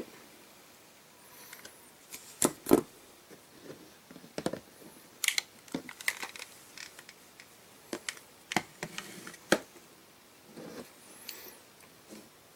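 Scattered light clicks and taps from handling the tools and the freshly soldered wire and ring connector, over a quiet background.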